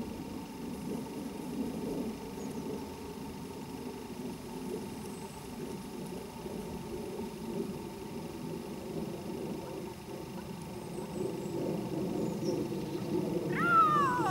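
A dog whining during training, a wavering vocal sound that carries on throughout, with a louder high falling whine near the end.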